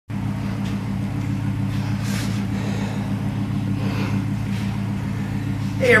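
Gen III Hemi V8 of a 1928 Dodge rat rod idling steadily as it warms up, a constant low rumble heard from inside the garage.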